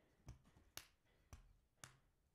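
Faint computer keyboard keystrokes: four short clicks about half a second apart against near silence, while text is being typed.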